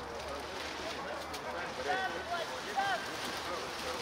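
Shouts from footballers on the pitch during play: two short calls about two seconds in and just before three seconds, over steady outdoor background noise.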